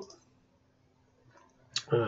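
Near silence, broken near the end by a single short, sharp click.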